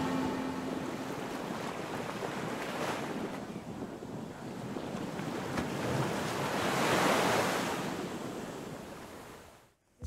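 Ocean surf breaking and washing up a sandy beach, swelling loudest about seven seconds in, then fading out just before the end.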